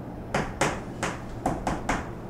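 Chalk writing on a blackboard: about six sharp, short taps and strokes of the chalk against the board as an equation is written.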